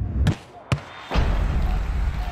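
Sound effects of an animated logo sting: a short whoosh, a sharp click about two-thirds of a second in, then a deep boom with a rushing whoosh from about a second in that slowly dies away.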